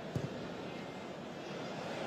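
Steady murmur of a stadium crowd at a football match, with one short dull thud a fraction of a second in.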